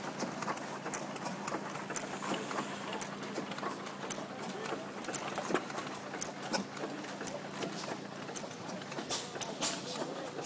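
International Harvester 10-horsepower Mogul single-cylinder engine running: a string of sharp clacks over a steady low hum.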